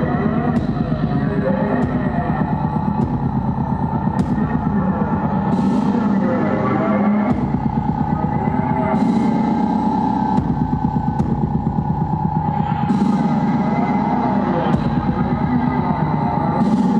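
Live harsh noise music played on electronics: a loud, dense drone with a fast rattling pulse underneath and a steady high tone, with a few sharp clicks in the first seconds and a surge of hiss about every three to four seconds.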